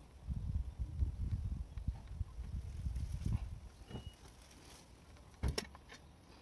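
Caulking gun being worked along a siding joint: low, uneven rumbling handling noise for the first few seconds, then a single sharp click about five and a half seconds in.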